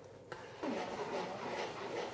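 Thick cream sauce simmering in a frying pan as it reduces, stirred with a spoon, with one light click of the spoon on the pan just after the start.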